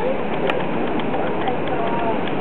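Steady running noise of a moving passenger train heard from inside the passenger car, with one sharp click about half a second in and faint voices behind.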